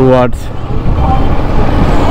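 Kawasaki Versys 650's parallel-twin engine running as the motorcycle rides on, with a steady low rumble of road and town traffic noise around it.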